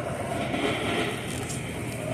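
Supermarket background noise: a steady low hum under the rattle of a shopping cart being pushed along the floor.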